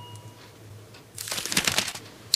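A faint ringing tone, like a small glass or chime, fades away at the start. About a second later comes a short crackly rustle, like paper or a paper towel being crumpled.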